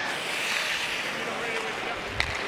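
Steady crowd noise in an ice hockey arena: a hum of many voices with no single event standing out.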